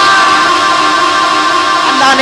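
A man's amplified voice holding one long, high sung note through the mosque's loudspeaker system, the chanted stretching of a word in a sermon delivered in a sing-song style.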